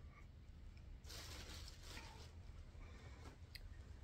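Faint rustling of clothing and a plastic bag as a garment is pulled out and handled, strongest for about a second, with a couple of light clicks near the end.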